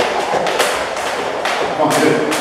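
Speed ropes slapping the floor mat and trainers landing as two people skip a back-and-forward footwork drill: sharp slaps about every half second, in a room that echoes.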